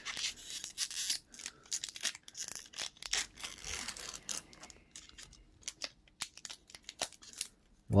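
A Magic: The Gathering Double Masters booster pack's foil wrapper being torn open by hand and crinkled: a dense run of sharp crackles and rips that thins out after about halfway.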